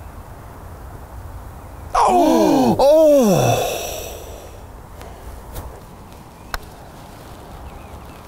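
A loud, drawn-out groan that slides steeply down in pitch about two seconds in, followed at once by a second 'ooh' that rises and falls, fading out by about four seconds. It is the reaction to a golf chip shot. A brief sharp tick comes later.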